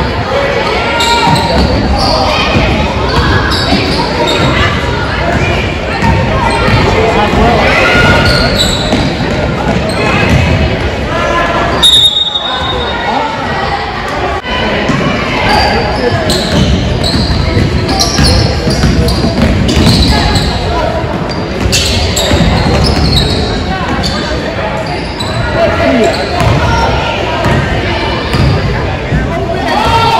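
A ball bouncing repeatedly on a gym floor during a school game, with players' and spectators' voices echoing in a large hall. A brief high tone sounds about twelve seconds in.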